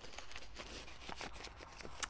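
Faint rustling and small clicks of a paper seed packet being handled and opened.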